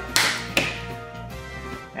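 A sharp hand clap marking the take, then a second, lighter one about half a second later, over background music.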